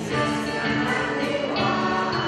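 A teenage choir singing together, with held notes that change through the phrase.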